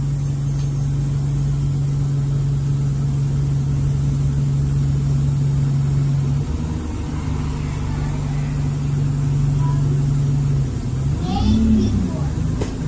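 Engine and drivetrain of a single-deck diesel bus (an Alexander Dennis Enviro200) running under way, heard from inside the saloon: a steady low hum that shifts in pitch about six and a half seconds in and drops away near the end.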